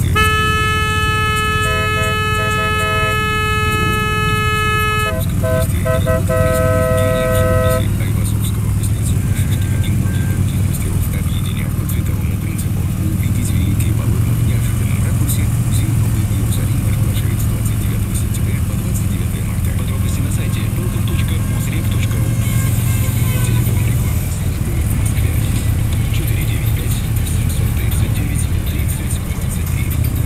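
Motorcycle horns sounding in the first eight seconds: one long, steady blast, then a second, shorter horn at a different pitch. Under them and throughout, the low, steady drone of a Harley-Davidson touring motorcycle's V-twin engine cruising at parade pace.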